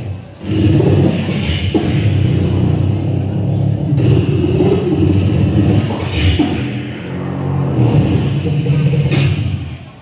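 Live beatboxing by a man's voice, amplified through a microphone: a continuous musical pattern carried by low, sustained bass tones, dropping off near the end.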